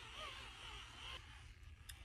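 Faint whirr of a battery-powered facial cleansing brush scrubbing cleanser over the face, fading about a second in. Its motor is running weakly on run-down batteries.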